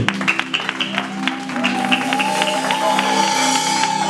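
Congregation clapping and cheering in acclamation over live keyboard worship music, with one long high held note that rises in about a second in.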